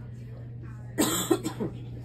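A woman coughing three times in quick succession about a second in, over a steady low hum.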